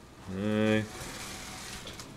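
A man's voice holding one drawn-out syllable for about half a second near the start, then only low, even background noise.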